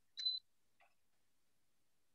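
A single short, high-pitched click with a brief ringing tone, a fraction of a second in, followed by a much fainter tick; otherwise near silence.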